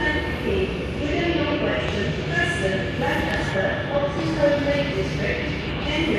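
Background voices talking over the low rumble of a Class 390 Pendolino electric train pulling out of the station.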